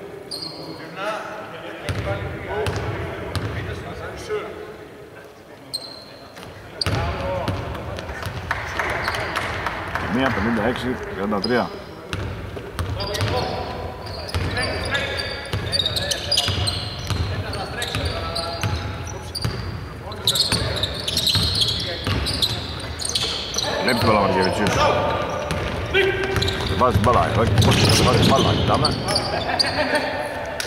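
A basketball being dribbled and bounced on a hardwood court during play, with players' voices calling out over it.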